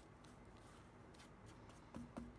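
Faint, irregular strokes of a flat brush brushing over a plastic clock-radio case, with a light tap right at the end.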